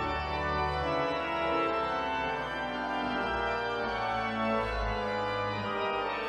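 Church organ playing slow, held chords over sustained deep bass notes, the chords changing about once a second.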